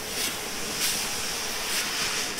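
Scoop shovel digging into shelled corn inside a steel grain bin and throwing it. The kernels slide and rattle in short hissing rushes about once a second, over a steady hiss.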